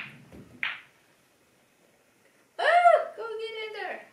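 Pool balls clicking and rolling apart just after a break shot, with one sharp ball-on-ball click under a second in. After a short silence, a high drawn-out voice sound in two rising-and-falling notes near the end is the loudest thing heard.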